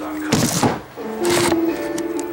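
Handheld camera being set down on a desk: two loud, brief knocking and rustling handling noises, about half a second and a second and a half in, over steady background music.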